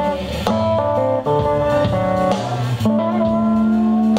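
Live blues band: a Telecaster-style electric guitar plays a short lick between sung lines, over bass guitar and drums, ending on a long held note.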